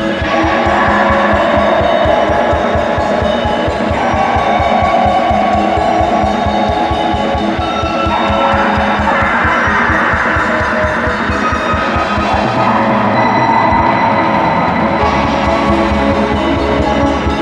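Atmospheric black metal: dense distorted guitar and keyboard chords that shift every few seconds over rapid, steady bass drumming. The low drumming thins out for a couple of seconds near the end, then comes back.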